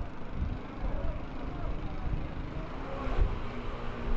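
Street noise on a flooded road: motorcycle engines running through the water, with people's voices in the background.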